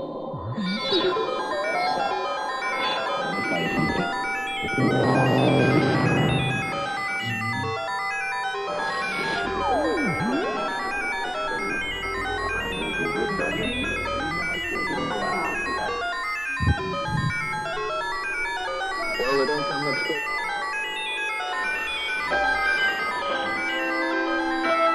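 Electronic music built from shortwave radio noises: a dense scatter of short beeping tones and whistles over a low hum. A tone is held for the first several seconds, with a louder swell about five seconds in, and sweeping glides in pitch come around ten seconds in.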